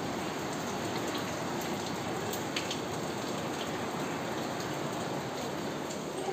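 Heavy rain falling steadily: a constant, even rushing hiss.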